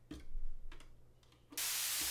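A few clicks of patch-cable jacks being handled at a Eurorack module, then about one and a half seconds in a steady white-noise hiss comes on. The hiss is white noise passed through the Bastl Propust passive fixed filter's 220 Hz high pass, so its bass is cut.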